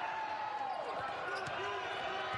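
A basketball bouncing a few times on a hardwood court during live play, with a sneaker squeak, over the steady background noise of an indoor arena.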